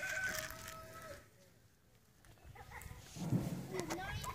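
A rooster crowing: one drawn-out call of about a second at the start, settling slightly lower in pitch before it stops.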